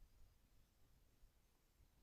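Near silence: faint room tone with a low rumble.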